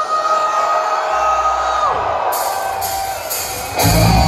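Live concert crowd cheering and whooping under a long held high note that slides down about two seconds in. Just before the end a heavy metal band comes in loudly with guitars and drums.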